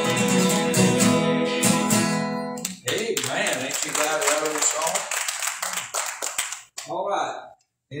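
Acoustic guitars strumming and ringing out the last chord of a country gospel song, stopping about two and a half seconds in. Voices follow for a few seconds, then a brief silence near the end.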